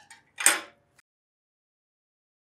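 A short metallic clank about half a second in, with a brief ring after it, as a thin steel feather blank is handled on a steel welding table. A faint click follows about a second in.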